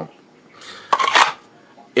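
A rigid plastic gun holster being handled: a short rustle about half a second in, then a louder brief scrape a moment later.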